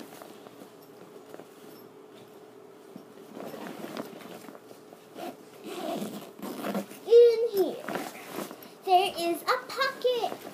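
A nylon backpack is rummaged through and its contents handled, making rustling sounds. In the last few seconds a child's voice makes wordless sounds that arch up and down in pitch.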